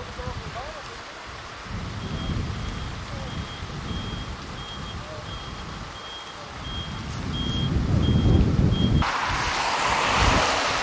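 Ambulance reversing alarm beeping at one high pitch, about two beeps a second, while the ambulance backs up, over low wind rumble on the microphone. The beeping stops about a second before the end, where a louder steady rush of wind noise comes in.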